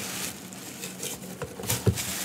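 Plastic shipping bag crinkling and rustling as it is handled in a cardboard box, with a few short knocks near the end.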